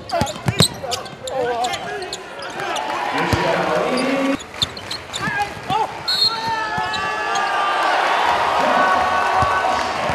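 Basketball bouncing on a hardwood court, with sharp knocks in the first second, over the voices and noise of a gymnasium crowd that carry on through the second half.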